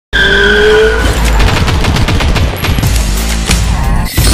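Logo-intro sound effects over a deep rumble: a held, slightly rising squealing tone in the first second, then a fast, irregular rattle of sharp cracks.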